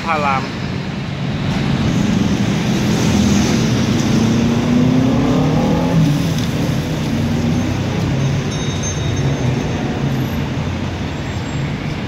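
Road traffic, with a motor vehicle's engine passing close by over a steady traffic rumble. The engine's drone rises and then falls in pitch from about two to seven seconds in.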